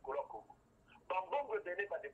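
Speech only: a person talking, with a brief pause about half a second in.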